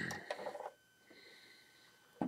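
Plastic LEGO Hero Factory figure pieces clicking and rattling as the Dragon Bolt model is handled, a short louder sound first, then a few light clicks within the first second, after which it goes quiet.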